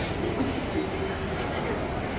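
Indoor shopping-mall ambience: a steady background hum with faint, indistinct chatter of passing shoppers.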